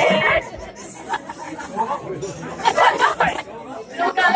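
Chatter of several people talking and calling out together around a dinner table, with a louder burst of voices a little before three seconds in. A sung or musical passage cuts off just at the start.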